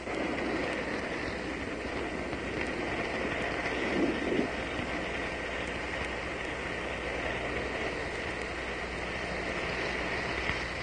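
Steady background hiss and hum with a faint, constant high whine, and a brief faint swell about four seconds in.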